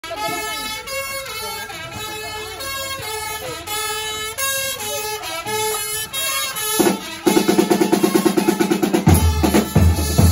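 Marching drum corps: a pitched melody with changing notes at first, then marching snare drums come in with fast, dense strokes about seven seconds in, and bass drums join with heavy beats about two seconds later.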